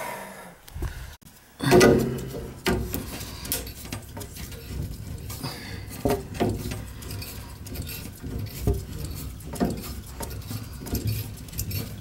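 Scattered clinks and knocks of hands handling metal pipe, a ball valve and plastic filter-housing parts, with a louder clunk just under two seconds in.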